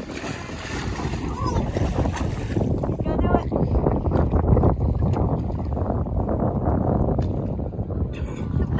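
Wind buffeting the microphone: a rumbling noise that builds about a second in and then holds steady.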